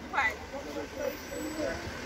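Indistinct voices, with a brief higher-pitched call about a fifth of a second in, over the steady noise of road traffic.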